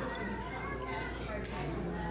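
Background hubbub of many voices talking at once, children's voices among them, with no single voice standing out.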